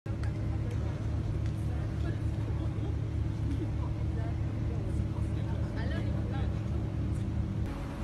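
A steady low mechanical hum, like a running engine, with faint voices in the background. The hum changes abruptly just before the end.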